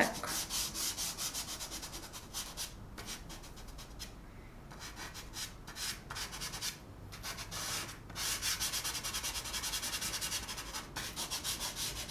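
Chalk pastel stick scratching and rubbing across paper in quick, short, repeated strokes as dark shading is laid in. The strokes thin out and soften for a few seconds in the middle, then pick up again.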